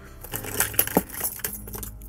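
Metal hand tools (scissors, pliers, cutters) clinking and rattling against each other and the metal tool case as a hand rummages through the box, a run of sharp clinks loudest in the middle.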